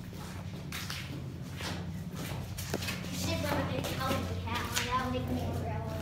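Footsteps on a stone floor, roughly one a second, with indistinct voices talking over them in the second half and a steady low hum underneath.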